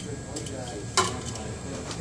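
Low room murmur with a few light clinks, and one sharp clink about a second in.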